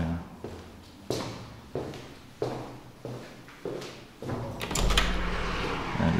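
Footsteps on a bare hard floor in an empty, echoing room, five steps about 0.6 s apart. Then a plastic window's latch clicks and a steady rush of outdoor wind comes onto the microphone for the last second and a half.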